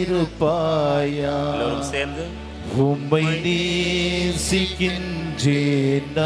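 A man's solo voice chanting a slow Tamil devotional hymn through a microphone, holding long wavering notes and gliding between them, with short breaths between phrases. A low steady drone runs underneath.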